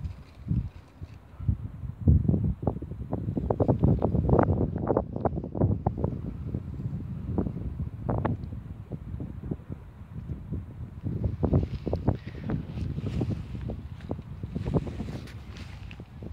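Wind buffeting the phone's microphone outdoors: low rumbling gusts with crackles, stronger from about two seconds in.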